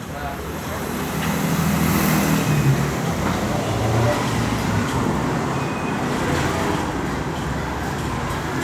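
Street traffic noise: a motor vehicle's engine running, its low rumble growing louder over the first two seconds and then holding steady.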